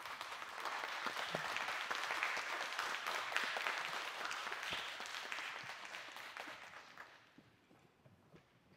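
Audience applauding, building up at the start and dying away over the last few seconds.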